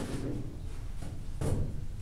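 A single short knock about one and a half seconds in, from things being handled on a table, over a low steady room hum.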